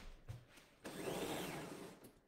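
A window blind being pulled closed, heard as a noisy rush about a second long that starts a little under a second in.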